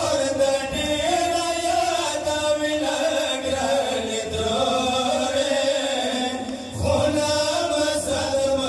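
Two male reciters chanting a Pashto noha, a Shia mourning lament, into microphones, in long held, slowly bending lines. The chant dips briefly for a breath near the end of the phrase, then comes back in.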